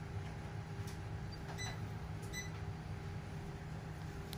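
Steady low hum of room noise, with two faint short high tinks, one about a second and a half in and one just past two seconds.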